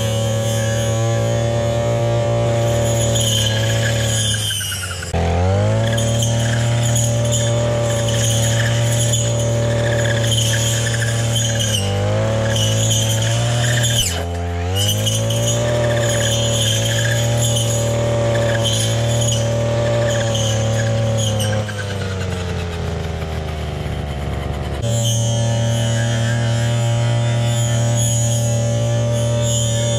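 Coocheer 58cc two-stroke brush cutter running near full throttle while its blade cuts through weeds. The engine speed dips and climbs back twice, about five and fourteen seconds in, and sags lower with a falling pitch for a few seconds near the end before returning to full speed.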